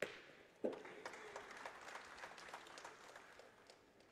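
A shot steel pétanque boule lands on the gravel terrain, and about half a second later it strikes another boule with a sharp metallic clack that rings briefly. The crowd then applauds for about three seconds, fading toward the end.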